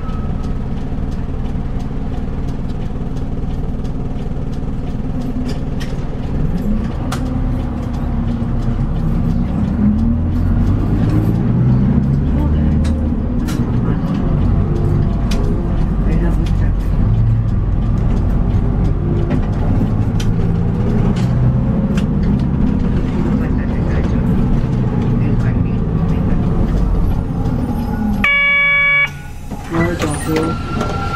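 Diesel engine of a city bus, heard from inside the cabin, pulling away and accelerating, its pitch rising and shifting through gear changes, with the cabin rattling and clicking. About a second before the end, a short electronic chime sounds.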